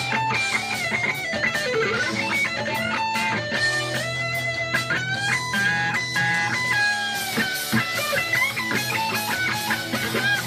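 Electric guitar soloing over a rock backing track with drums and bass. There is a downward bend about two seconds in and fast runs of notes around the middle.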